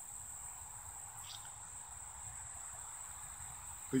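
Faint, steady, high-pitched insect chorus with no break, over a low background rumble.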